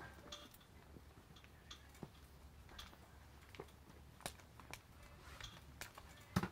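Near silence: faint outdoor room tone with a low steady rumble and scattered small clicks and taps at uneven intervals.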